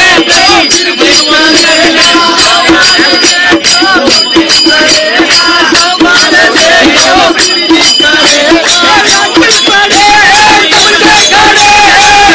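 Music: a chanted, sung melody over a steady beat of sharp percussive strikes, about three to four a second, with crowd voices mixed in.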